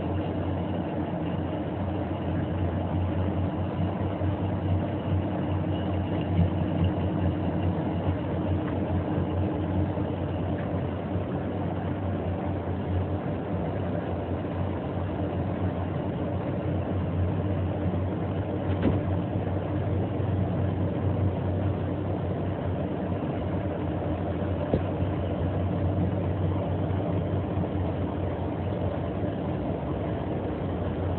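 Axelson Model 25 engine lathe running steadily under power, a constant machine hum from its motor and gear drive. One faint click about two-thirds of the way in.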